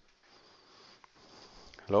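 Faint breathing and sniffing close to a headset microphone, then a spoken word near the end.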